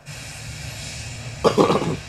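A steady rushing hiss sets in suddenly, and about a second and a half in a person gives one loud cough.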